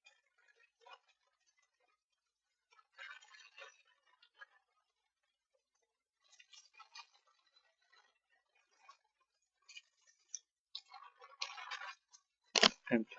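Faint computer keyboard typing: short runs of keystroke clicks with pauses between them.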